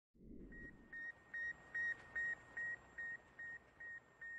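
Electronic sound effect: a regular series of short, high, identical beeps, about two and a half a second, starting about half a second in and growing a little fainter toward the end, over a faint hiss. A brief low rumble opens it.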